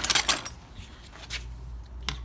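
Handling clatter: a quick run of knocks and rattles in the first half second, then a couple of single clicks, over a low steady hum.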